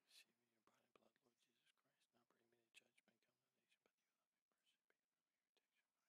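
Near silence, with a priest's faint murmured prayer under his breath for the first few seconds: the quiet private prayer said before Communion.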